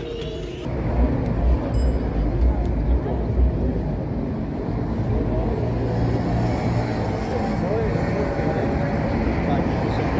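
Outdoor city ambience: a steady low rumble of road traffic, uneven in the first few seconds, with faint voices of people walking nearby.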